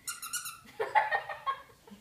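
High-pitched squeaking from a dog: a quick run of short squeaks, then a louder, busier flurry of squeaks about a second in.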